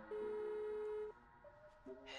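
Telephone ringback tone heard through the handset: one steady tone lasting about a second, over a soft, sustained music bed.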